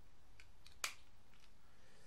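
Parts of a TFC Silverbolt transforming robot figure clicking as they are moved into place: one sharp click a little under a second in, with a fainter click just before it.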